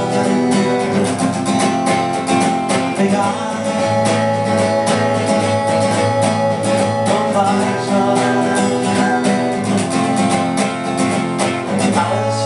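Acoustic guitar strummed in a steady, even rhythm, chords ringing on through the passage.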